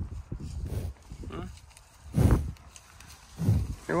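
American bison at close range giving a short, loud breathy grunt, then a lower, softer one about a second later.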